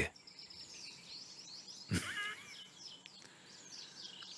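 Faint birds chirping in the background, short high calls scattered through a pause in speech, with one brief louder sound about two seconds in.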